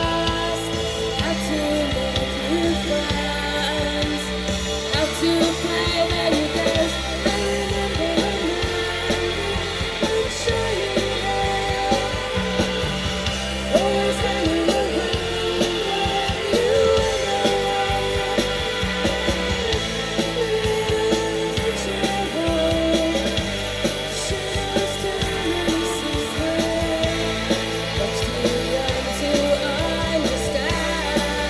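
Shoegaze rock band playing live: layered electric guitars, bass and drums, with a woman singing.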